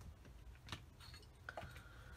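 Near silence, with two or three faint small clicks from hands handling small craft tools on a tabletop.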